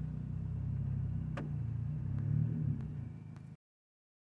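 A steady low rumble with a single faint click, which cuts off abruptly to dead silence about three and a half seconds in.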